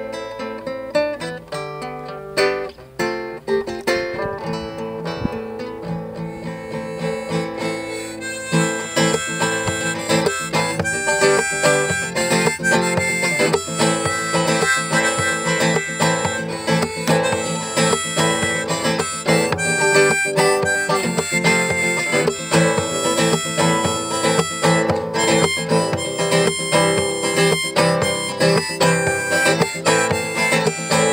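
Classical nylon-string guitar playing alone at first, then joined about eight seconds in by a harmonica held in a neck holder, the two instruments playing a tune together.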